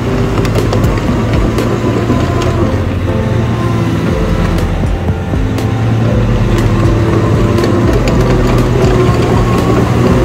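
Tracked shredder's engine running steadily as the machine drives forward on its steel crawler tracks, with scattered short clanks.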